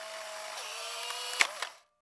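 Instant camera's motor whirring as it ejects the photo just taken, dropping slightly in pitch about half a second in, with two clicks near the end before it stops.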